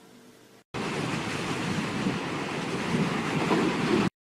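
A steady rushing noise, like surf, starts about three-quarters of a second in, swells slightly, and cuts off abruptly at the end.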